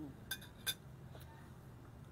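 Two short, faint clicks about half a second apart: mouth smacks from chewing a mouthful of food.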